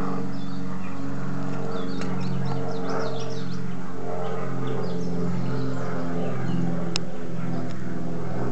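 A steady low engine or motor drone whose pitch shifts slightly now and then, with small birds chirping over it and a single brief click near the end.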